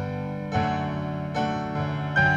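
Instrumental intro of a worship song: a keyboard plays sustained chords, moving to a new chord about half a second in and again about a second and a half in.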